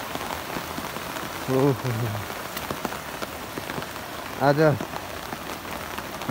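Steady rain falling on vegetation and the ground, an even hiss with no let-up.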